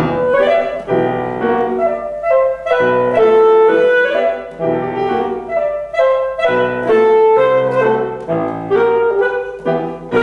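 Alto saxophone playing a quick melodic line over piano accompaniment, in short phrases with brief dips between them.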